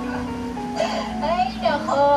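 Soft background music with steady held tones, and a voice speaking over it from about a second in.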